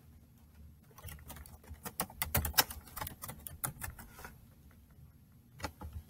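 Typing on a Chromebook keyboard: a run of quick key clicks, a pause of about a second, then a few more keystrokes near the end.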